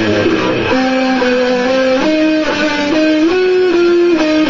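Electric guitar playing held chords, moving to a new chord every second or so.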